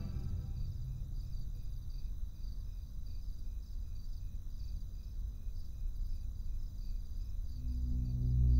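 Crickets chirping in an even rhythm, about three chirps a second, over a low steady rumble.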